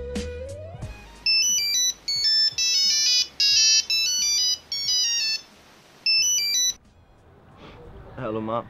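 Phone ringtone: a high electronic melody of short stepped notes in a run of bursts, starting about a second in and stopping abruptly near the end. Background music fades out at the start.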